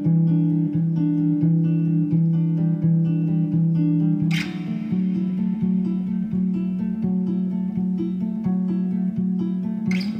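Semi-hollow Epiphone electric guitar, clean tone, playing a repeating picked figure of ringing notes that moves to a new chord about halfway through. A sharp click cuts across it about four seconds in.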